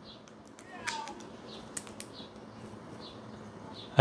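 Soft clicks and handling noise of a video cable and its adapter being plugged together, the sharpest click about two seconds in. A few faint, short, high chirps sound in the background.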